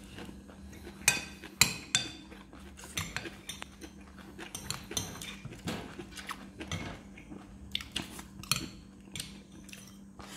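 Metal spoon and fork clinking and scraping against a ceramic plate, two loud clinks about a second in and half a second apart, then lighter taps and scrapes throughout.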